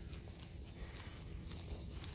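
Faint footsteps through grass over a low rumble.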